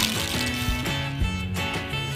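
Plastic cheese-shaped spinner of a Mouse Trap board game flicked with a sharp click, then spinning and ticking on its card dial, over background guitar music.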